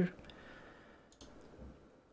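A few faint computer mouse clicks about a second in, over quiet room tone.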